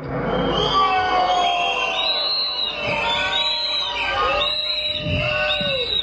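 Protest crowd whistling and booing: many overlapping whistles rising and falling at once, with some lower voiced boos among them, jeering the prime minister's words just quoted.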